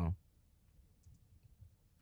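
A few faint, separate computer keyboard keystrokes as a couple of letters are typed.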